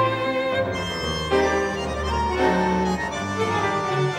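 A tango orquesta típica playing, led by its bandoneon section in held, reedy notes and chords that change every half second to a second.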